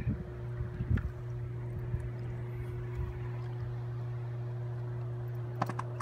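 Steady low electrical hum, as from the transformers and power lines of a substation, holding one even pitch with a fainter higher tone above it. There is a soft thump about a second in and a few faint clicks near the end.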